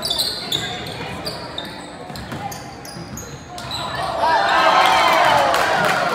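Basketball being dribbled on a gym's hardwood floor, with sneakers squeaking as players run. About four seconds in, spectators' voices grow loud over the play.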